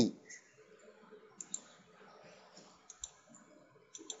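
Computer mouse clicks, a few faint short clicks coming roughly in pairs, a second or so apart.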